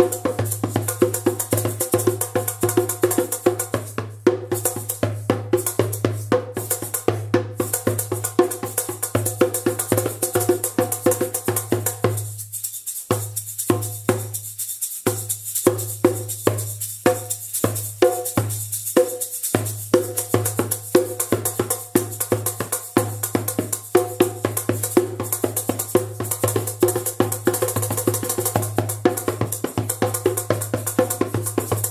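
Djembe played with bare hands in a fast, steady rhythm, with a shaker rattling along on top. Around the middle the pattern thins to spaced single strokes for several seconds, then the full rhythm comes back.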